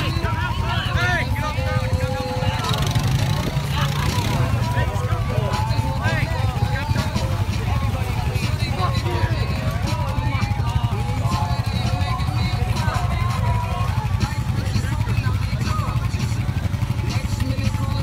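An ATV engine idling steadily, with overlapping shouts and calls from several people out in the water.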